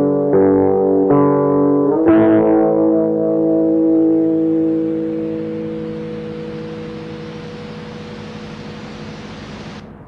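Guitar chords in a black metal recording: a few quick chord changes, then a final chord left to ring out and slowly fade, with hiss growing as it dies away and a sudden cutoff near the end.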